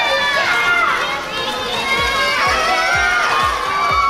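Background music: a song with a sung melody, with a low beat coming in about halfway through.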